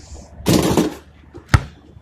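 A short rush of noise about half a second in, then a single sharp thump about a second and a half in: a basketball bouncing on pavement.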